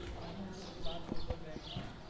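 Footsteps on a paved street, a few sharp steps about a second in, over faint indistinct voices.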